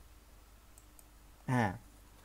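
Two faint computer-mouse clicks about a fifth of a second apart, advancing a presentation slide, over a low steady hum; a short spoken syllable follows, louder than the clicks.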